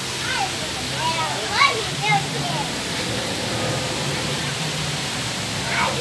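Young children's high-pitched voices, several short calls and squeals with the loudest about one and a half to two seconds in and another near the end, over a steady rushing background noise.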